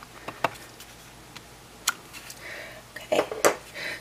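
A few light, sharp taps and clicks of a photopolymer stamp on its clear block being inked on an ink pad and pressed onto card stock, the loudest about two seconds in.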